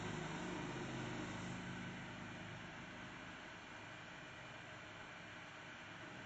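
Faint, steady background noise of room tone with a low hum that fades away over the first two seconds or so.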